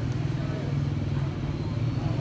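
A motor vehicle's engine running close by as a steady low hum that swells through the middle, with people talking in the background.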